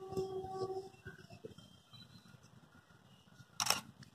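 DSLR shutter of a Canon EOS 5D Mark II firing once near the end, a short sharp mechanical click. A low rumble of wind on the microphone in the first second.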